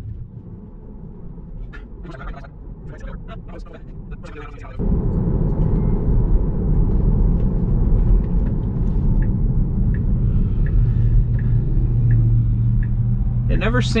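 Road and tyre rumble inside the cabin of a Tesla electric car on the move. It is fairly quiet at first, then suddenly louder about five seconds in, with a steady low hum near the end as the car slows.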